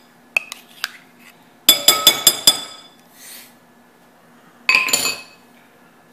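Metal spoon clinking against a glass mixing bowl while mayonnaise is knocked loose into it: a few light ticks, then a quick run of about five ringing taps, and another clatter near the end.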